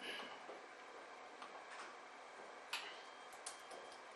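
Faint, irregular clicking of computer keyboard keys as a command is typed, about half a dozen sharp clicks over a low steady hiss.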